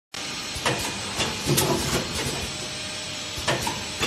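Continuous thermoforming oral-liquid tube filling and sealing machine running: a steady mechanical hiss with sharp clacks and knocks from its moving stations, repeating every couple of seconds as it cycles, with a louder cluster of knocks about a second and a half in.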